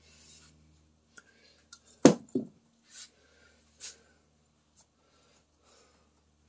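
Handling of an aerosol can of penetrating oil at a metal workbench: a brief hiss at the start, then two sharp knocks about a third of a second apart some two seconds in, and a few short scrapes after.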